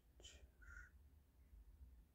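Near silence: room tone, with two faint, brief sounds in the first second.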